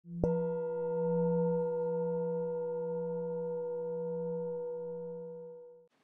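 A singing bowl struck once, ringing with a low, slightly wavering hum and several higher tones, slowly fading away over about five and a half seconds.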